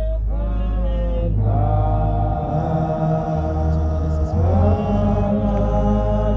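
Slow chanted singing: voices hold long notes and slide up to new ones about a second and a half in and again past four seconds, over a sustained low drone that shifts pitch every second or so.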